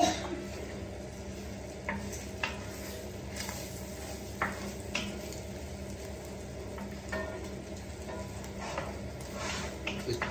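Bacon and egg frying in a large non-stick pan, a steady sizzle, with the scrape and knock of a wooden spatula stirring it now and then.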